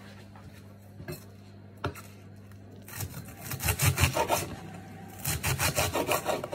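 Kitchen knife slicing a leek on a wooden chopping board: two light knocks, then from about halfway in, quick runs of cutting strokes, several a second, with a brief pause between them.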